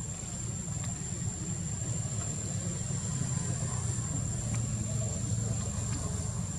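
A steady low rumble runs throughout, with a thin, steady high-pitched whine above it and a few faint clicks.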